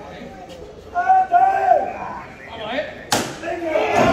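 Men's voices calling out, then a single sharp bang from the costaleros' wooden rehearsal float about three seconds in, followed by more voices.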